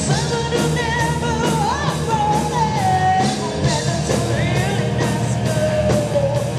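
Live rock band playing loud and steady: a woman singing a wavering melody over electric guitars, bass and a regular drum beat.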